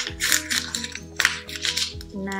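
A sheet of construction paper being crumpled by hand into a ball, in a series of short crackling bursts, over background music with steady sustained notes.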